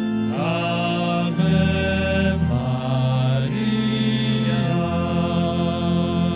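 A congregation singing a slow hymn in long held notes, the pitch changing about once a second over a steady low accompaniment.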